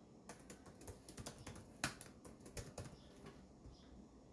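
Typing: a quick, irregular run of about fifteen key taps, starting shortly after the start and stopping about three seconds in, with one louder tap near the middle.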